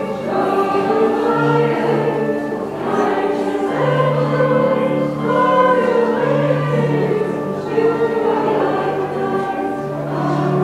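A choir singing a hymn in long, held notes.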